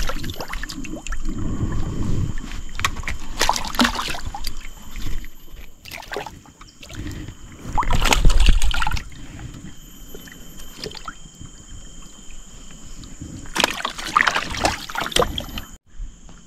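Water sloshing and splashing in the bottom of a small boat in irregular bursts as a freshly caught fish lying in it is handled; the loudest, heaviest burst comes about halfway through.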